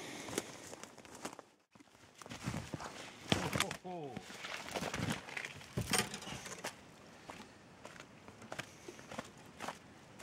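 Footsteps crunching in snow and brush, with irregular scuffs and light knocks, as a trapped fisher is worked out of a trap among fallen logs.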